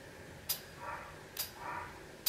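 Faint, muffled barking of a pet dog in the house, two short barks about a second apart, with a couple of small sharp clicks.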